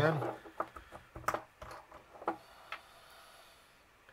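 A few light clicks and taps, spaced irregularly, from small objects being handled at a fly-tying bench while a cocktail stick and head varnish are got ready.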